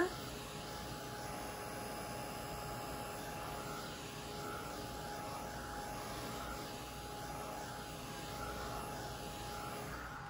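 Handheld dryer running steadily, its fan blowing air with a faint steady whine, drying wet spray ink on paper.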